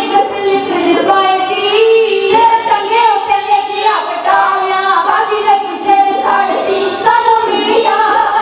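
Dhadi singing: voices singing a Punjabi ballad to the accompaniment of a bowed sarangi and dhadd hourglass drums, with long held, bending notes.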